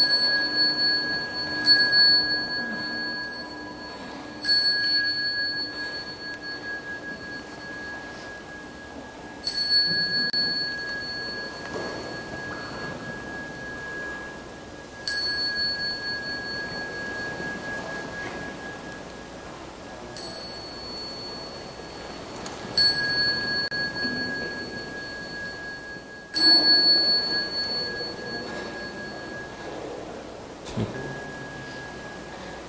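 A small Buddhist bowl bell struck about eight times at uneven intervals of two to five seconds, each strike a bright, high ring that fades over a few seconds. It sounds to time the nuns' bows. A deeper ringing tone dies away during the first few seconds.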